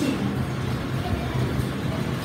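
Steady low background rumble with no speech over it.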